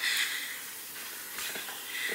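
Faint steady hiss of background room noise, with a soft click about one and a half seconds in.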